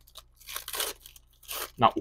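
Foil wrapper of a Panini football card pack being torn open by hand, with two bursts of tearing and crinkling, the first about half a second in and the second about a second and a half in.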